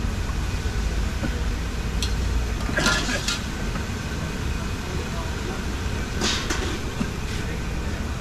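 Busy street ambience: a steady low rumble of traffic with indistinct background voices, broken by a few brief clinks and knocks, about three seconds in and again about six seconds in.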